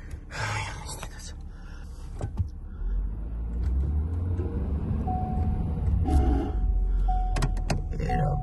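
Ford F-350 Super Duty pickup's engine running, its low rumble growing stronger about three seconds in. From about five seconds in, a dashboard warning chime repeats about once a second.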